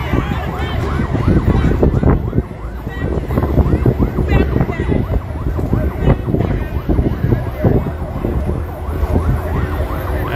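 A convoy escort siren yelping, sweeping up and down about four times a second, over the rumble of vehicle engines in slow traffic.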